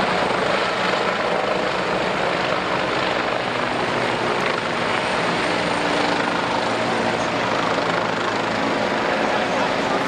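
Airbus H145M helicopter flying low overhead: a loud, steady wash of main-rotor and turbine noise that holds an even level throughout.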